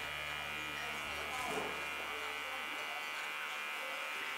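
Electric hair clippers buzzing steadily while shaving a head bald.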